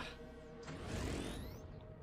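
Quiet cartoon soundtrack: music under a mechanical whirring effect, with rising sweeps about a second in.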